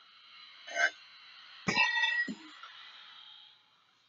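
Sound chip in a plush Fluffy three-headed dog toy playing its recorded growl when the button on its back is pressed: a faint sound a little before a second in, then a louder, sharper sound about two seconds in that fades out.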